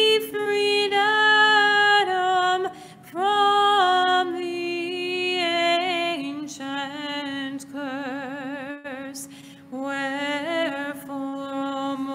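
Unaccompanied Orthodox liturgical chant. A higher voice sings the melody with vibrato over a steadily held lower note, in sustained phrases with short breaks for breath.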